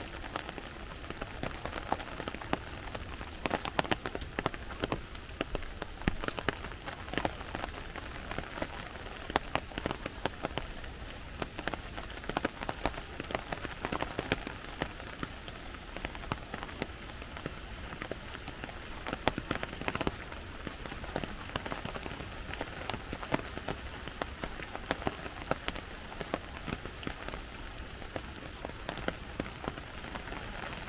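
Steady rain falling in woodland, an even hiss scattered with many irregular sharp ticks of drops.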